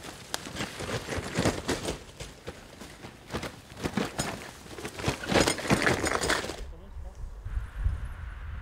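Dry leaves and twigs crunching and crackling irregularly under a loaded touring bicycle on a forest path. Near the end the crunching cuts off suddenly, and a quieter low rumble follows.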